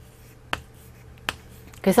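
Two sharp taps of chalk against a chalkboard while writing, about three-quarters of a second apart.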